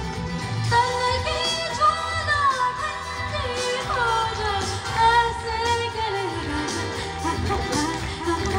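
Live amplified singing of an Indian song medley with instrumental accompaniment, the melody gliding up and down over a steady low backing.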